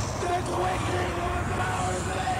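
Movie sound effects of a supernatural lightning storm: a continuous rumbling, crackling roar with a held low tone over it that dips about halfway through.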